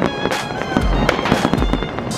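Aerial fireworks shells bursting, several sharp bangs within two seconds, with music with a bass beat playing at the same time.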